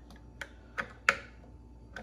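Plastic popsicle-mold lids with built-in sticks being pressed down into the mold tray: a few sharp plastic clicks and knocks, the loudest just after a second in, as a stiff blue lid is worked into place.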